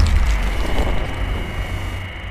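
Logo-intro sound effect: a deep impact hit right at the start, followed by a low rumble and a faint high ringing tone that slowly fade away.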